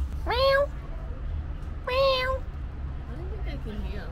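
Ring-tailed lemur giving two meow-like calls about a second and a half apart, each sliding up in pitch and then holding steady.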